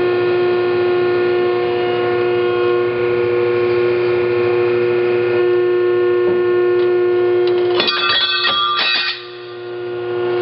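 A Metal Muncher MM35 35-ton hydraulic ironworker runs with a steady, pitched hum from its hydraulic pump while the plate shear blade strokes down. About eight seconds in, the blade cuts through a strip of metal with a brief harsh metallic burst of screeching and snapping. The machine's sound then drops off for a moment.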